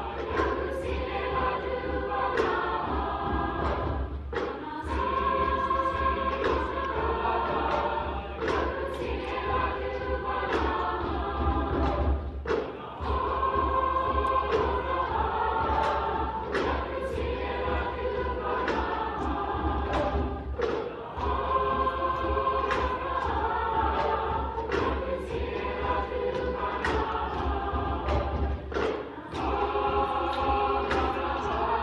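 Middle-school choir singing in parts, accompanied by regular percussive thuds on the beat.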